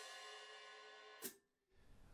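Open hi-hat cymbals ringing on after a single stick strike, slowly fading. The ring stops with a short click a little over a second in.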